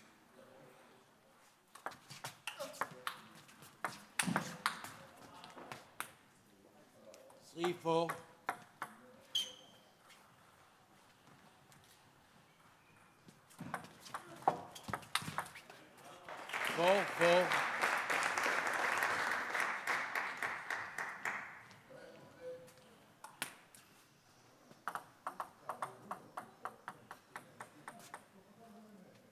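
Table tennis rallies: the ball clicks sharply off bats and table in quick strokes. Near the middle a point ends with a shout and about five seconds of clapping, which is the loudest part. Near the end the ball is bounced evenly on the table before a serve.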